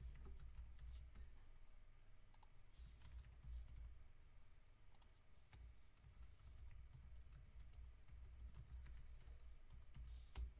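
Faint typing on a computer keyboard: scattered, irregular key clicks over a low room hum.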